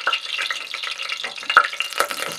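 Hot cooking oil sizzling in a stainless steel pot, a steady hiss with a few sharp pops: the oil has come up to frying temperature.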